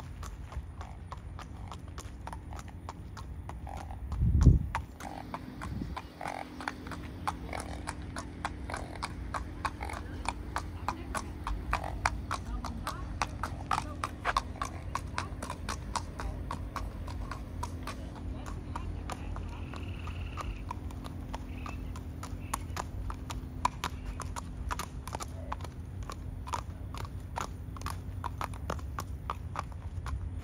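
A Thoroughbred horse's hooves clip-clopping on asphalt at a steady walk, an even run of sharp strikes. There is one dull low thump about four seconds in.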